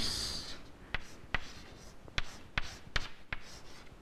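Chalk on a chalkboard as capital letters are written, about seven short, sharp taps and strokes at uneven intervals.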